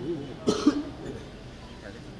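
A man coughs briefly, clearing his throat, about half a second in, picked up by a podium microphone.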